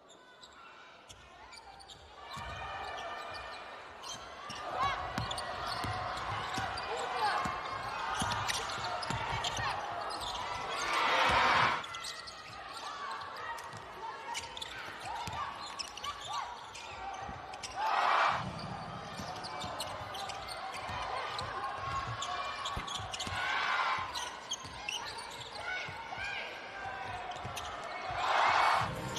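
Live sound of a basketball game in an indoor arena: the ball bouncing on the court under a steady crowd din with voices. It fades up at the start, and the crowd cheers loudly in swells about 11 seconds in, again around 18 and 24 seconds, and at the very end.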